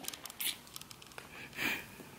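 Faint breathing and mouth noises close to the microphone as a gummy worm is held between the lips, with one small click a little past a second in.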